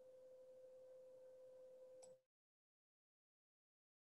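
Near silence: a faint steady hum-like tone that cuts off abruptly about two seconds in, leaving dead digital silence as the presenter's microphone feed is muted.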